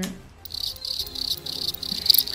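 Cricket chirping sound effect, a high, rapidly pulsing trill that starts about half a second in, marking an awkward blank pause.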